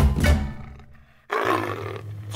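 Percussive background music fading out, then about a second and a half in a big cat's roar starts suddenly and slowly fades: a roar sound effect.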